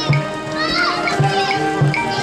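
High school marching band playing: brass holding sustained chords over a few low drum strokes. Children's voices are heard over the music, with one high voice wavering near the middle.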